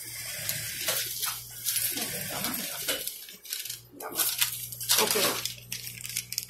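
Large paper pattern sheets rustling and sliding as they are handled and laid over one another, in uneven bursts, over a low steady hum.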